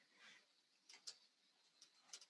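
Near silence with a couple of faint clicks about a second in, from clicking at the computer to bring a PowerPoint slideshow back up after it has ended.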